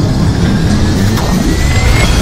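Sound design for an animated show title: a loud, dense rumbling whoosh with a thin whine slowly rising in pitch over it.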